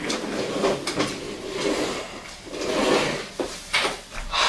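Office chair being pulled out and sat in at a desk: a series of knocks and scrapes of furniture, with rubbing and handling noise in between and two sharp knocks near the end.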